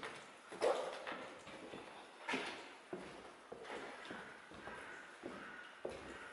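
Footsteps of a person walking over a gritty, debris-covered floor, a step about every two-thirds of a second.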